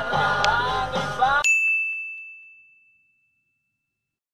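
Music with singing cuts off abruptly about a second and a half in, replaced by a single bright ding that rings and fades out over about a second and a half, then dead silence.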